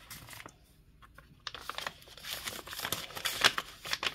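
Paper rustling and crinkling as it is handled, in light irregular crackles that start about a second and a half in.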